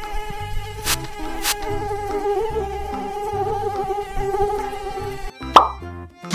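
Mosquito-buzz sound effect from a swarm of cartoon mosquitoes: a steady, slightly wavering whine over light background music. Two clicks come about a second in, and a short loud pop with a falling pitch comes near the end.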